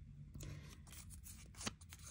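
Faint crinkling and rustling of a paper sticky note being handled by fingers, starting about half a second in, with one sharper click a little before the end.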